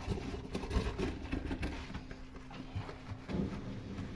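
Stainless-steel kitchen sink being scrubbed with soap by gloved hands and a bristle brush: wet rubbing with irregular knocks and clicks against the steel. A low steady hum comes in near the end.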